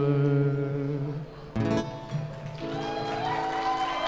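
Acoustic guitar and a singer ending a song: a held sung note over the guitar, a final strum about a second and a half in, then a chord left ringing.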